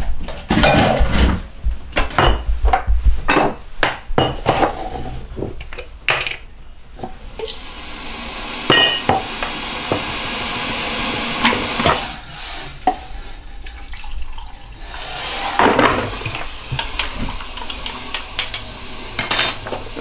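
Crockery, jars and cutlery clinking and knocking as things are handled on kitchen shelves. Then a kettle heating, with a rushing hiss that slowly grows louder.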